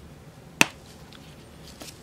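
A single sharp click about half a second in, with a couple of faint ticks near the end, from a bottle of acrylic paint being handled and opened for pouring.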